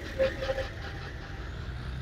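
A steady low mechanical rumble, engine-like, with no clear snips of the scissors standing out.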